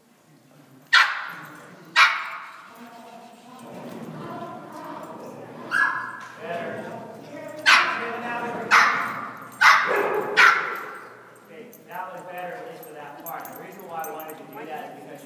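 A dog barking in sharp single barks, about seven in all: two a second apart near the start, then a run of five over the middle, each ringing on in a large echoing arena.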